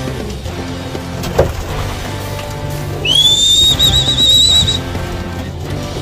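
Background music, with a single high whistle about three seconds in that rises quickly, then holds for about two seconds with a brief warble before stopping.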